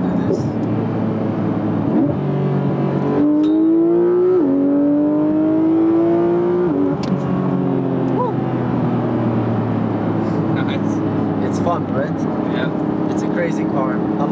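Porsche 911 GT3's naturally aspirated flat-six heard from inside the cabin, revving up under hard acceleration with two upshifts, the first about four seconds in and the second about seven seconds in, then running steadily at cruising speed.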